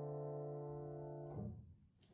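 Piano sounding a held D minor seventh chord with an added ninth (Dm7(add9)), slowly fading, then cut off as the keys are released about one and a half seconds in.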